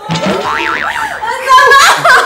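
A wobbling cartoon "boing" sound effect about half a second in, then a woman's loud shrieking laugh near the end.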